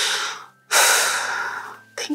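A person breathing heavily in an emotional embrace: two loud breaths, the second a long one that fades out.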